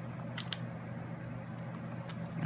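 Hands handling cardstock and foam adhesive dimensionals: two faint crisp clicks about half a second in, over a steady low hum.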